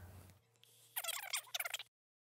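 A short burst of high, warbling, chirpy sound, like audio played at fast-forward speed, about a second in. It cuts off abruptly to dead silence just before the end.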